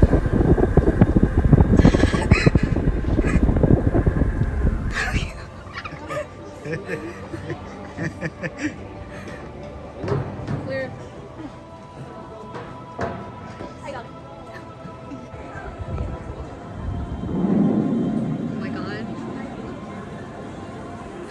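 A person riding down an enclosed stainless-steel tube slide: a loud rumble of body and clothes rubbing on the metal tube for about five seconds, stopping abruptly at the bottom. After that it is much quieter, with scattered knocks and faint voices.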